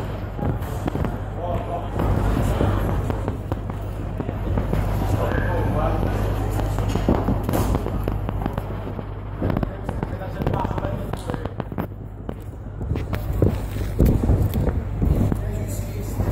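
Ringside sound of a live boxing bout: crowd voices and shouts over a steady low hum of background music, with frequent sharp knocks and slaps from the boxers' punches and footwork on the canvas.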